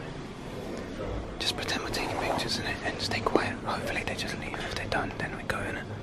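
Hushed whispered speech, unintelligible, starting about a second and a half in and running in short breathy phrases, over a faint steady room hum.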